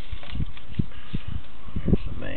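Sewer camera push cable being fed into the drain line: irregular low thumps and knocks a few times a second over a steady hiss, the strongest near the end.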